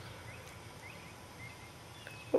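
Faint bird chirps, several short calls scattered through the moment, over a low steady outdoor background hum.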